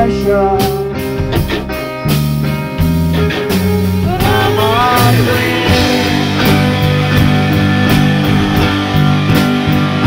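Two electric guitars played live through amplifiers: a Telecaster plays single notes, some of them bent, over chords. It sounds like a jam.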